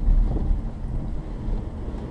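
Steady low rumble of a car driving, its road and engine noise heard from inside the cabin.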